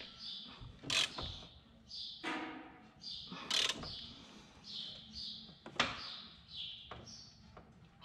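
Hand tools clicking and knocking against the steel of a planter row unit while its closing wheel is adjusted: a few sharp knocks, the loudest about a second in. Small birds chirp repeatedly in the background throughout.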